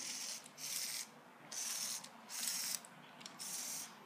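Lego Mindstorms robotic claw's motor and plastic gears whirring in short bursts, about five of them, as the fingers are driven open and closed.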